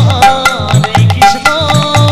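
Instrumental passage of Bengali kirtan music: a khol drum playing a steady rhythm whose bass strokes bend upward in pitch, kartal hand cymbals striking with it, and a keyboard playing a melody over them.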